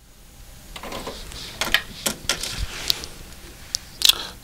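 Nakamichi ZX-9 cassette deck being stopped and the cassette ejected and lifted out: a series of sharp clicks and plastic clatter from the deck's buttons, cassette door and the tape shell being handled.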